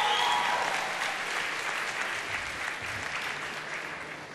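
Studio audience applauding, the applause slowly dying away near the end.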